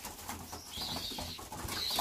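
Young racing pigeons shuffling and fluttering their wings on a straw-covered loft floor, with soft cooing. The sounds are faint.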